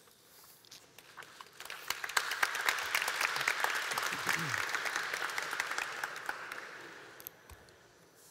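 Audience applauding: the clapping builds up about a second in, holds, then dies away near the end.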